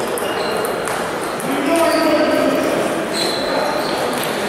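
Table tennis balls striking tables and bats across a hall where several matches are being played: a few short, sharp pings, over a background of voices.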